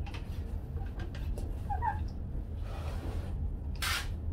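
A pre-pressurised hand-pump garden sprayer lets off a short, loud hissing jet of spray near the end, with the nozzle set to a harsh stream. A steady low hum sits underneath, and a couple of faint high squeaks come about two seconds in.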